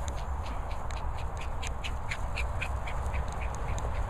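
A rapid run of short animal calls, about six a second, over a steady low rumble.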